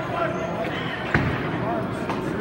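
Five-pin bowling alley sounds: steady background chatter of voices, with one sharp knock from the lanes about a second in.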